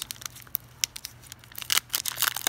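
Foil wrapper of a Pokémon trading card booster pack being torn open by hand at its crimped seal: scattered crinkles and small rips, coming thick and fast near the end.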